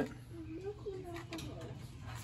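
A faint voice in the background, with a few light clicks.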